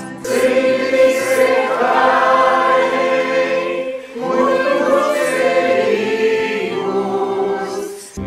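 A virtual choir of men's and women's voices singing a hymn together in long held notes, in two phrases with a short break for breath about halfway.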